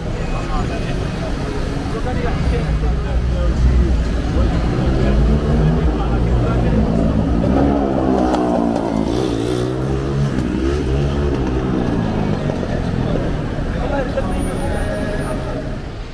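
Busy city-street traffic: car and motorcycle engines running and passing, mixed with the chatter of a crowd. In the middle, a vehicle passes close, its engine note rising and then falling.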